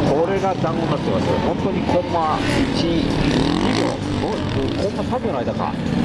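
Yamaha WR450F single-cylinder four-stroke engine revving up and down again and again, in quick bursts of throttle as the bike is flicked through tight turns.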